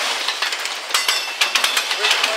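Steel wheels of autorack freight cars rolling past on the rails, clicking and clanking irregularly several times a second over a steady high-pitched rolling hiss, with a faint metallic squeal about halfway through.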